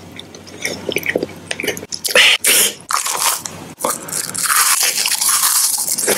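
Close-miked mouth sounds of eating: small wet clicks at first, then loud crunching from about two seconds in, becoming a denser, continuous crackle over the last two seconds.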